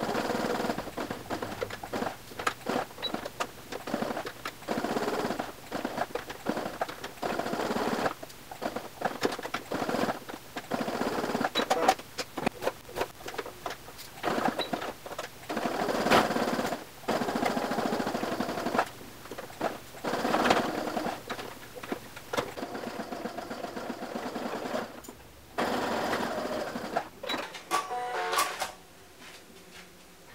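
Domestic sewing machine stitching a seam in runs of a few seconds, stopping and starting again many times, with a quieter stretch near the end.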